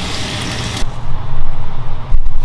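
Egg and oil sizzling in a hot frying pan on a gas stove, the hiss stopping abruptly just under a second in. A steady low rumble underneath grows louder after that.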